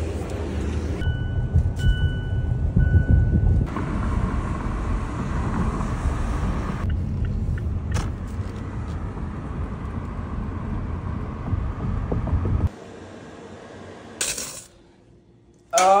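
Steady low rumble of a car being driven, heard from inside the cabin, with a high electronic beep repeating a few times about a second in. The rumble drops away suddenly near the end.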